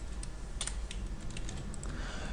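Computer keyboard being typed on: a scattering of irregular, light keystrokes over a low background hum.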